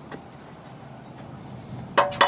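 Quiet, steady outdoor background noise with no clear source, ending with a single sharp click.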